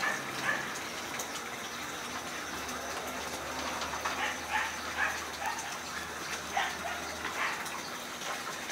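Small dogs giving short high-pitched yelps, about eight of them, most in a cluster in the second half, over a steady rushing hiss.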